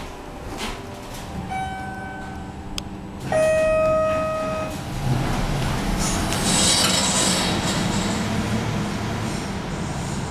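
Elevator arrival chime: a steady electronic tone about a second and a half in, then a lower, louder tone about three seconds in, each lasting about a second. A steady rushing noise follows from about halfway through.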